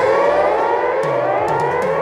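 Siren-like synthesized rising sweeps, a sound-design riser effect: one upward glide ends about a second in and a second one climbs through the rest.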